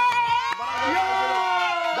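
A small group of people cheering together in long, held shouts that slide down in pitch near the end.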